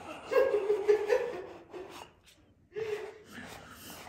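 A woman's voice making a drawn-out laughing, gasping sound without words, then a shorter second one near the end.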